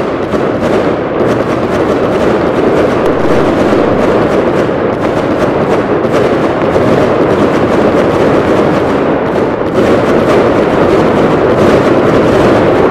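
A fireworks display with many aerial shells bursting and crackling in quick succession, the bangs running together into one steady, dense noise. It grows a little louder near the end.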